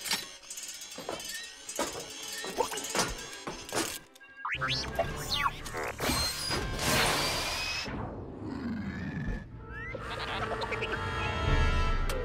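R2-D2's electronic droid talk: quick beeps and whistles that slide up and down in pitch, with a few sharp clicks, over background music.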